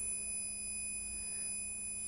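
Fluke 179 multimeter's continuity beeper sounding one steady high-pitched tone, as the probes read near zero ohms across a closed pair of contacts on the micro-switch.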